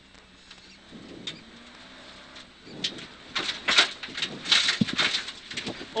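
Inside a Mercedes 500SLC rally car: the 5.0-litre V8 faint with a low steady note, then from about three seconds in, loud irregular crackling and rattling as gravel is thrown against the car on an unpaved stretch.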